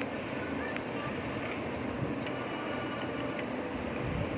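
Steady background hiss and hum with no distinct event. A pencil drawn along a ruler on paper is at most faintly present.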